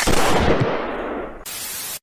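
A cartoon gunshot sound effect: a loud blast whose noise tail fades over about a second and a half. It is followed by a short burst of TV-static hiss near the end.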